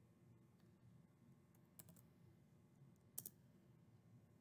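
Two faint keystrokes on a computer keyboard, about a second and a half apart, the second louder, over near silence.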